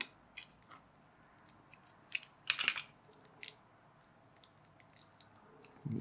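Small scissors cutting the tape that binds the 18650 lithium-ion cells of a laptop battery pack: a few light snips and clicks, with one longer crackling cut about two and a half seconds in.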